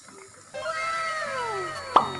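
A drawn-out pitched sound of several tones that rises slightly and then slides down over about a second and a half, ending in a sharp hit near the end.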